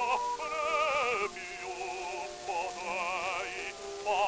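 Early acoustic 78 rpm record of an operatic bass singing with orchestra: the voice has a wide, wavering vibrato over a steady hiss of record surface noise, and the sound is thin. The level drops a little over a second in and rises again near the end.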